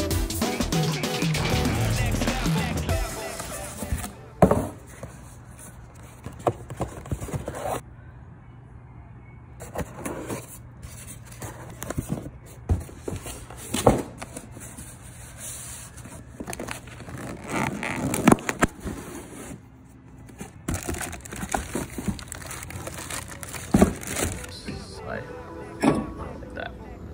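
Background music that stops about four seconds in. After it come scattered knocks, clunks and rustling as new brake rotors and their cardboard box are handled, the loudest knocks about four seconds in and near the end.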